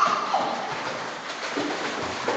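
Young children kicking their feet in shallow pool water, splashing steadily, with a couple of short cooing vocal sounds from a toddler.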